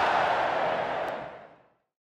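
Tail of an intro logo sound effect: a wash of noise with no clear pitch, fading out over about a second into silence shortly before the end.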